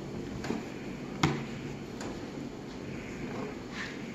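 Handling noise as a stiffened ceramic fiber blanket panel is pressed into a sheet-steel forge box: one sharp knock about a second in, a few lighter taps, and a soft scrape near the end as the box is tipped.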